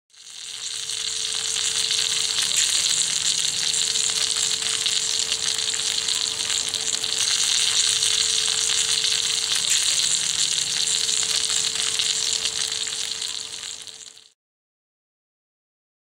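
Italian sausages with peppers sizzling in a USGI mess kit pan over a wood-burning camp stove: a dense, steady sizzle with a faint steady tone underneath. It fades in at the start and cuts off suddenly about 14 seconds in.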